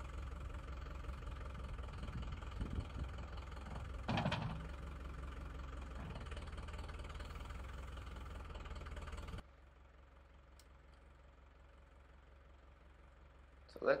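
Lovol 504 tractor's diesel engine idling steadily, with a brief louder burst about four seconds in. About nine seconds in the engine is switched off and its sound cuts out suddenly.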